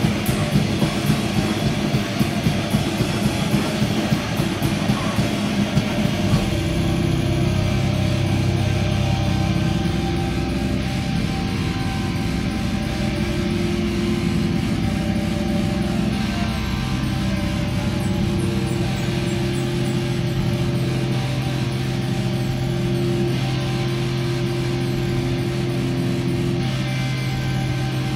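A live grindcore band playing at full tilt, with rapid drumming under distorted guitar for about six seconds. The drums then stop and the band holds a loud, steady amplified drone of sustained feedback and noise.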